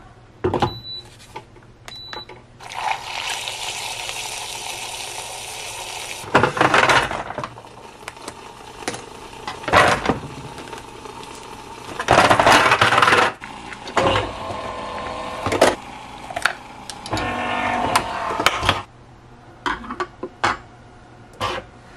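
Coffee-making sounds: Nespresso Vertuo capsules and glass and metal parts clinking and knocking, a steady hiss for about three seconds near the start, and several louder spells of a machine running further on.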